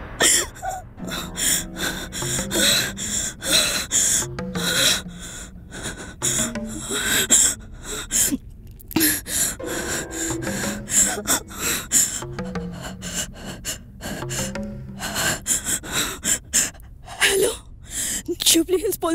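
A frightened woman gasping and breathing hard in short, repeated breathy bursts, over tense background music.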